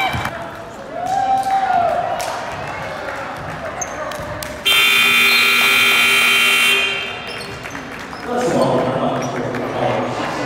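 Gym scoreboard horn sounding the end of the game: one steady blare of about two seconds that starts suddenly halfway through and cuts off, over gym noise of voices and a bouncing basketball.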